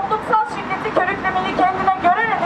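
Speech: a woman's voice reading a statement.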